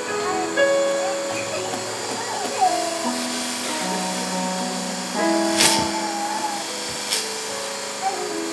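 Soft keyboard music, sustained chords that change every second or so, with two sharp clicks in the second half.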